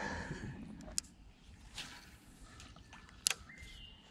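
Spinning rod and reel being handled: a faint click about a second in and a sharper click about three seconds in, over a quiet open-air background.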